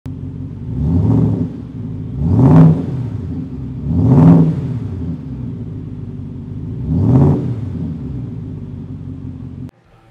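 Ford F-150 Raptor R's 5.2-liter supercharged V8 idling and revved four times, each blip rising and falling back in pitch, heard at the tailpipes. The engine sound cuts off suddenly near the end.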